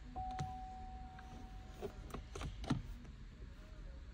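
A faint steady tone at one pitch lasting about a second and a half, followed by a few soft taps and clicks.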